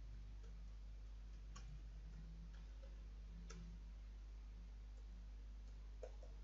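A handful of faint, irregular computer keyboard clicks, two of them a little sharper than the rest, as a label is typed. Under them runs a low, steady electrical hum.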